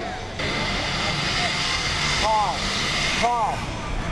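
Skis sliding down a water-ramp in-run, a steady hiss that starts about half a second in, grows louder past the middle and stops shortly before the end. Short shouts come over it twice.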